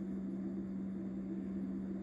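A steady low hum with faint background hiss and no other sound: room tone.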